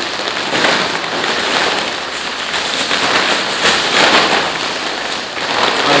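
Plastic carrier bag and foil crisp packets crinkling and rustling as a bagful of crisps is tipped out onto a table, a dense, loud crackle throughout.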